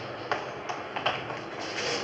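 Footsteps of several people walking on a hard floor, a radio-drama sound effect: light, evenly paced steps over a steady hiss.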